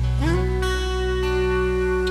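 Live band starting a song's instrumental intro: steady low bass notes under a melody note that slides up into pitch and is held.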